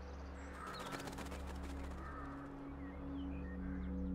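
Soft sustained background music, a low steady drone, with birds calling over it in short chirps. A quick flutter of rapid clicks runs from about half a second to two seconds in.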